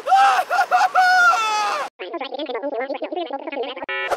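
High-pitched wordless cartoon voice crying out: a few quick cries, then one longer held cry that cuts off suddenly about two seconds in. It is followed by a fast, jittery babble.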